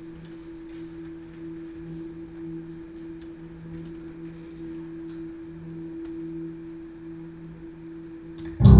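A sustained low musical drone: two steady tones an octave apart, the lower one wavering slightly in strength. Faint scattered clicks sound under it.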